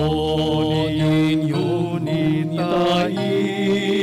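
A solo voice singing a slow, chant-like melody over held accompaniment chords. It is the sung responsorial psalm of a Catholic Mass, following the first reading.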